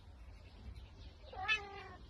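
A cat meowing once, a short call about a second and a half in that rises briefly and then falls in pitch.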